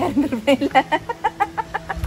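A woman laughing: a quick run of short pitched bursts lasting most of two seconds.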